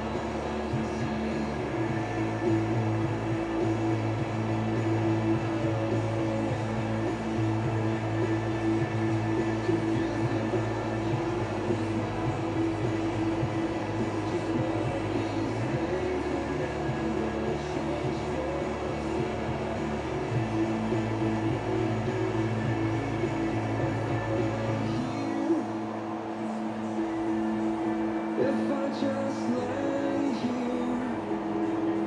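Pop music playing on a radio, with the bass line shifting every few seconds, heard inside a vehicle over its running noise.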